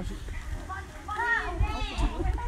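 Several voices talking at once, some of them high children's voices, over a low rumble.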